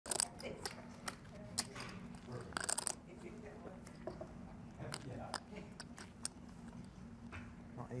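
Sharp clicks of clay poker chips being handled at the table, with a quick run of them between two and three seconds in, over a steady low hum.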